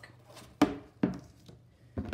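Two sharp knocks about half a second apart, the first the louder, as a ruler and a cardboard box are handled.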